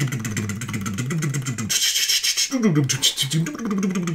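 A man vocally imitating a drum solo: rapid beatbox-style mouth-drum hits mixed with a gliding, sung voice, and a hissing cymbal-like burst about two seconds in.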